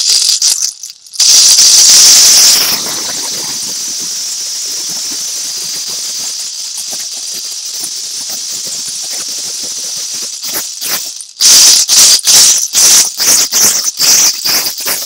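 Gourd shaker hung with large seeds, rattling as it is shaken: a loud burst of shaking, then a softer continuous rattle for several seconds, then sharp separate shakes, about three a second, near the end.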